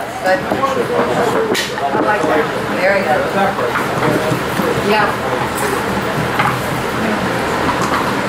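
Indistinct overlapping chatter from several people in a room, over a steady low hum, with a couple of sharp clicks.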